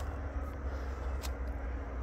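A steady low droning hum with no breaks, from a source that cannot be seen.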